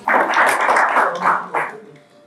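A small audience clapping in a short, dense burst that cuts off abruptly about a second and a half in.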